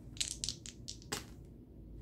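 Dice rolled onto a paper game sheet on a tabletop: a quick rattle of small clicks, then one sharper click about a second in as a die comes to rest.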